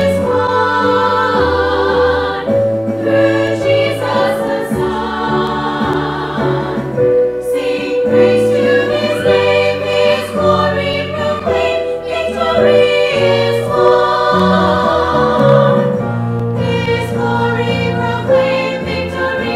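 A women's ensemble of about eight voices singing a hymn together from hymnbooks, with held notes, over an instrumental accompaniment playing steady low notes that change about every second or two.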